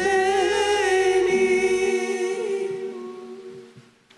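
A group of voices holding the final chord of a sung birthday greeting, with a steady low accompanying note underneath that drops out about a second in; the singing dies away near the end.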